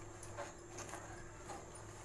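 Faint light taps and clicks of a metal spatula pressing a phulka as it puffs over a gas flame, a few scattered strokes over a steady low hum.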